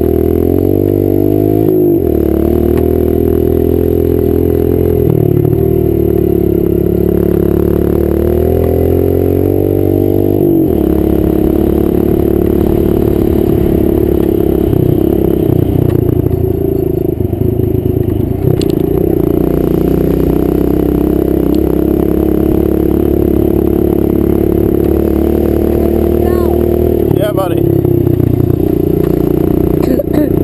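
Kawasaki KLX110's small four-stroke single-cylinder engine running under way, its pitch rising and falling with the throttle: it climbs early on and again a few seconds later, then drops off sharply about ten seconds in before steadying, and lifts once more near the end.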